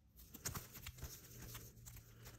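Faint rustling and light clicks of plastic-sleeved trading cards being shuffled and flipped through in the hand.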